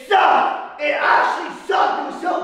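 A man yelling in pain: three loud cries in quick succession.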